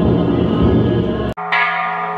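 Background music that cuts off abruptly about a second and a half in, followed by a hanging Japanese temple bell struck once and ringing on in several steady tones.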